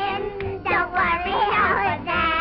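High-pitched cartoon singing voice with gliding, quickly changing notes over an orchestral soundtrack.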